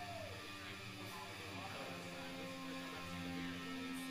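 Quiet electric guitar notes ringing through the amplifier, unaccompanied. One note arches down in pitch right at the start, and a low note is held through the second half.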